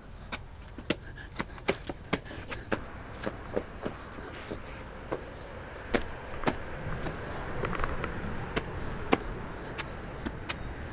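Footsteps on concrete pavement: sharp, irregular taps, about two a second, over a steady low rumble.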